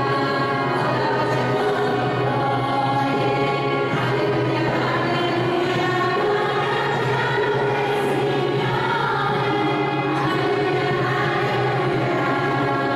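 A choir singing a hymn in long, held notes, at a steady level.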